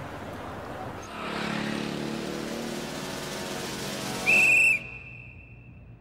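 A rushing noise that swells with a low held chord, then a loud, high, steady whistle about four seconds in, lasting half a second and dying away into a faint held tone.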